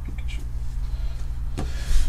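A steady low hum with a few faint soft clicks and rustles from Pokémon trading cards being handled.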